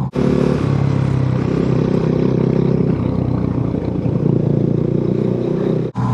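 Motorcycle engine running steadily at low speed, heard from on the bike, over a haze of wind and road noise.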